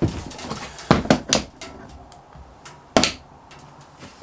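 Handling noises as a portable light is picked up and switched on: a few clicks and knocks, the loudest one about three seconds in.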